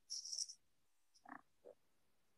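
Near silence on a video-call line, broken by a few faint short sounds: a brief hiss at the start, then two faint short sounds around a second and a half in.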